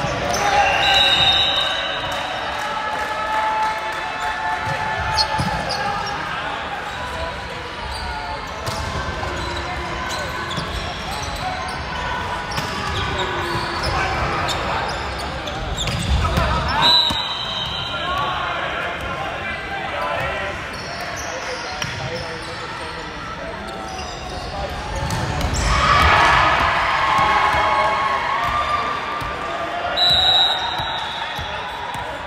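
Indoor volleyball play echoing in a large gym: ball hits and players' shouts and calls, with short high referee's whistle blasts about a second in and again midway. Near the end, shouting and cheering grow louder as a point is won.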